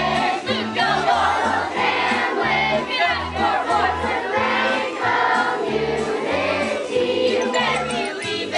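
An ensemble of young voices singing a musical number together over instrumental accompaniment with a bass line.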